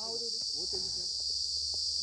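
Steady high-pitched insect chorus, a continuous shrill buzz, with faint voices talking underneath.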